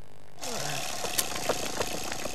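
Motorised whirring and rattling of a wind-up toy car, starting about half a second in with a short falling whine, then running steadily with a few sharp clicks.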